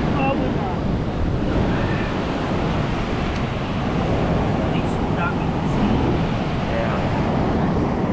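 Steady noise of beach surf mixed with wind buffeting the microphone.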